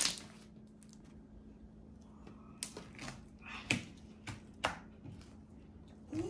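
Homemade slime being squeezed and kneaded by hand, giving irregular sharp clicks and pops, about seven over the few seconds, with the loudest one right at the start.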